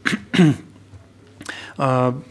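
A man clearing his throat once, sharply, into a close microphone, followed near the end by a held spoken syllable.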